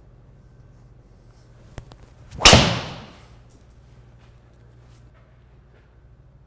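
Tour Edge EXS 220 driver striking a teed golf ball about two and a half seconds in: one loud, sharp crack of the clubhead hitting the ball, fading over about half a second.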